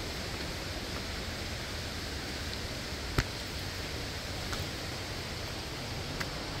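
Steady rush of falling water from a waterfall. One sharp tap stands out about three seconds in.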